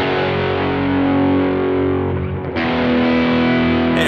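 Jennings Voyager electric guitar with Lambertones Cremas pickups playing a chord that is held and rings out. A new chord is struck about two and a half seconds in.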